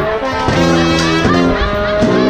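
Live funk brass band playing: a sousaphone bass line in short repeated notes under trumpets and saxophone.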